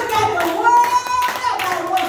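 Hand clapping in a regular rhythm under a voice holding long, drawn-out tones.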